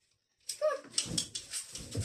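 A child's running footsteps and landings thud on a carpeted hallway floor as she jumps low poles, starting about half a second in with a short, high vocal sound.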